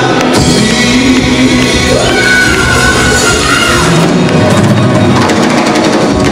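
Live Greek rock band with bouzoukis, electric guitar, bass, keyboards and drums playing the closing bars of a song, with a little singing and shouting, and a long held high note in the middle.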